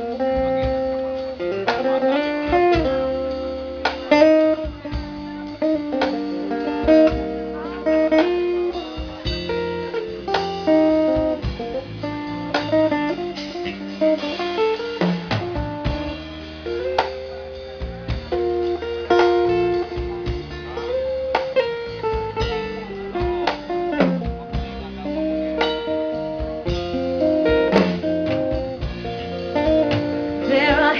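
Live acoustic band playing an instrumental break in a slow ballad, with a plucked guitar carrying the melody over low bass notes.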